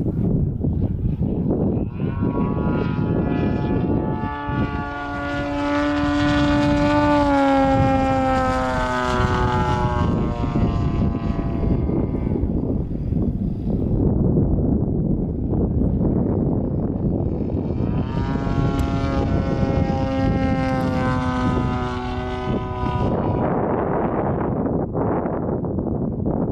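Yak-55 aerobatic plane's nine-cylinder radial engine and propeller droning overhead. The drone swells twice, about two seconds in and again near eighteen seconds, each time sliding down in pitch as it fades back, over a steady rushing rumble.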